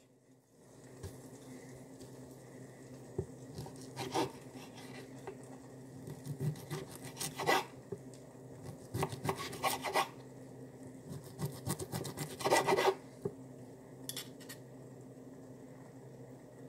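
Knife and fork cutting into a piece of cooked meat, the blade scraping against the surface beneath in several separate bursts, over a faint steady low hum.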